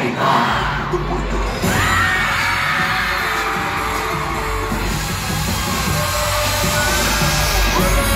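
Live pop concert music played loud over an arena sound system, heard through a phone in the audience, with fans screaming and cheering over it.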